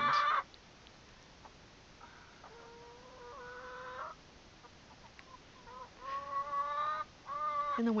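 Domestic hens calling in their coop: one faint, drawn-out call held for about two seconds in the middle, then louder calls near the end.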